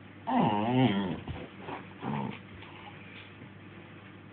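Staffordshire bull terrier vocalising: one long, wavering grumble of about a second, then a shorter one about two seconds in.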